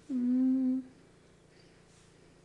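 A woman's short closed-mouth hum, one "mmm" held at a steady pitch for under a second near the start, then only quiet room tone.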